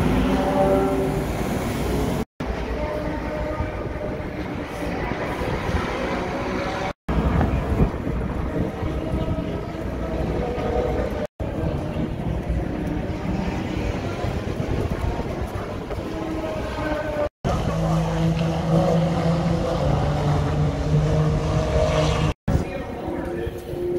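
Outdoor racetrack paddock ambience: a steady mechanical hum of engines and machinery, with a low steady tone near the end. The sound drops out briefly four times at the cuts between clips.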